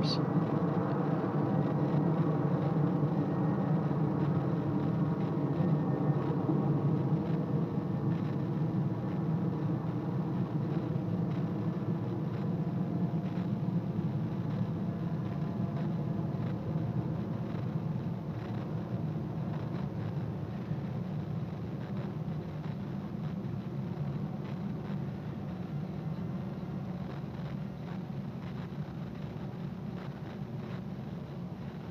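Aircraft engines droning in the sky: a steady hum of several tones that slowly fades and drifts slightly lower in pitch as the plane moves away.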